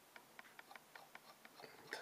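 Near silence with faint, even ticking, about five ticks a second.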